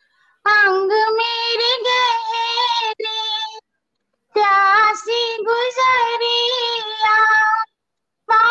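A woman singing a Hindi film song alone with no accompaniment, in two long phrases with a short break just past the middle.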